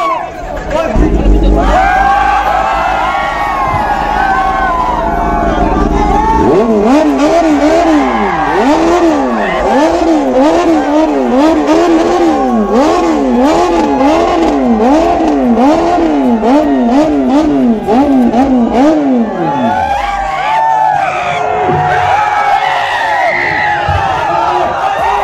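Sportbike engine starting about a second in and idling, then revved over and over from about six seconds, its note rising and falling roughly once a second, before dropping back near the end of the run. A crowd cheers and shouts throughout.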